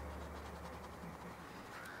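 Faint scratchy brushing of a flat bristle brush working acrylic paint onto stretched canvas.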